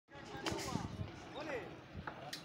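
Workers' voices calling on a building site, with a couple of short dull knocks about half a second in.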